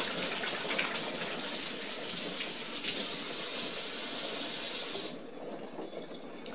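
Kitchen faucet running while hands are washed under it, then turned off about five seconds in.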